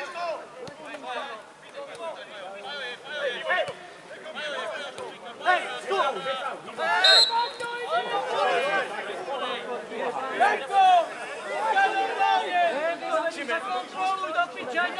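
Several voices of football-match spectators and players overlapping in chatter and shouts, with a short sharp high-pitched sound about halfway through.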